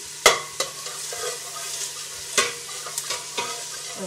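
Onions and garlic sizzling in a stainless-steel pot as a spoon stirs them, with the spoon scraping and knocking against the pot several times. The loudest knock comes about a quarter second in.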